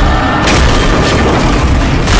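Trailer sound design: loud booming impacts and crash effects over dramatic music, with a sharp hit about half a second in and another near the end.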